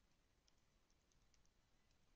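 Near silence with faint computer keyboard keystrokes: about seven quick, light clicks from about half a second in, as a password is typed.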